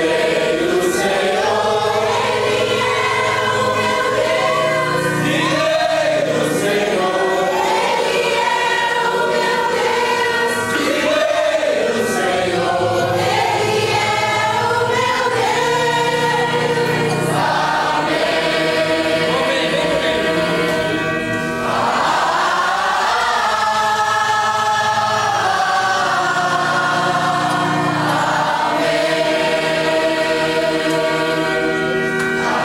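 A congregation of men and women singing together in worship, many voices on one melody with long held notes.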